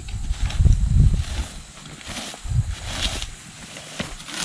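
A rake scratching and scraping through grass and turf, roughing up the ground to bare the dirt for a mock deer scrape. There is a heavy low rumble in the first second, then several shorter scratchy strokes.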